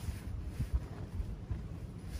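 Wind buffeting the microphone outdoors: a low, uneven rumble.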